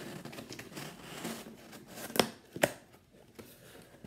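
Cardboard shipping box being pulled open: rustling and scraping of the cardboard flap, with two sharp snaps about half a second apart a little after two seconds in.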